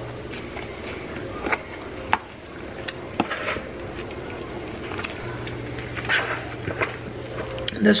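Serving spoon stirring a quinoa and chickpea salad in a plastic mixing bowl: scattered soft scrapes and clicks. A low steady hum comes in about five seconds in.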